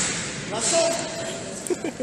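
Voices echoing in a large sports hall: a brief shout about half a second in, and short laughing near the end.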